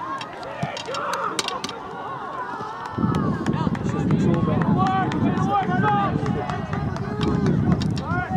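Distant shouts and calls from players and spectators at an outdoor soccer match. A low rumble on the microphone comes in suddenly about three seconds in and carries on to near the end.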